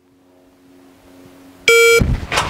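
Start beep from the MantisX dry-fire training app, a single loud electronic beep near the end that signals the start of a timed draw after a random standby delay. A faint steady hum comes before it.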